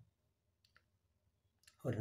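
A pause in a man's speech: near silence broken by a couple of faint, short clicks, then his voice resumes near the end.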